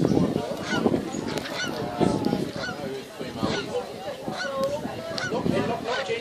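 Birds calling over and over: low rasping honks every second or two, with short rising-and-falling chirps between them.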